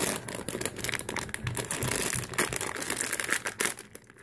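A clear plastic packaging bag crinkling and crackling as hands work it open, in a run of irregular crackles that dies away at the very end.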